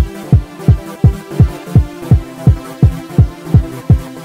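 Hard electronic dance beat: a heavy, pitched kick drum hits about three times a second, each hit dropping in pitch, over a held synth chord.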